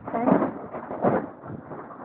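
A sudden, loud clap of thunder, cracking about a quarter second in and again about a second in.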